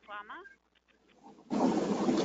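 Video-call audio: a participant's open microphone cuts off abruptly, and a brief sound with a gliding pitch follows. Near the end another microphone opens onto a steady background hiss.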